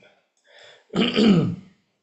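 A man clears his throat once, about a second in, the sound falling in pitch.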